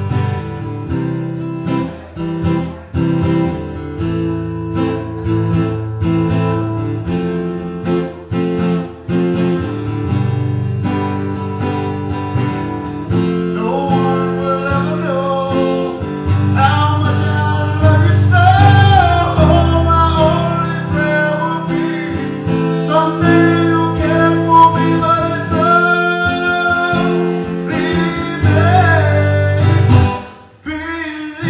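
A live acoustic guitar being strummed, playing chords alone for about the first dozen seconds. Then a man's singing voice comes in over it and carries on almost to the end.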